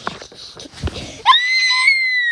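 A loud, high-pitched scream starts suddenly a little over a second in and is held at a steady, very high pitch, edging slightly higher near the end.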